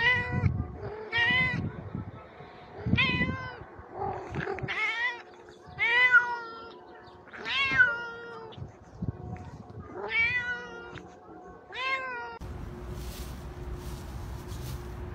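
A cat meowing over and over: about eight loud meows, each under a second long and rising then falling in pitch, spaced roughly a second and a half apart.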